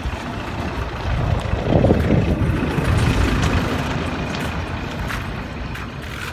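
A road vehicle driving past, its low rumble swelling about a second and a half in and slowly fading away.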